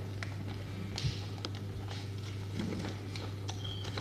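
Quiet church interior with a steady low hum, scattered small clicks and taps, and a soft knock about a second in. A brief thin squeak comes near the end, followed by a sharper click.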